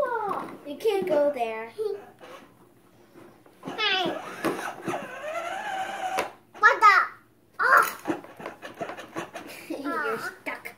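A young child's voice making wordless babbling and drawn-out vocal sounds, with two loud, high-pitched cries in the last third.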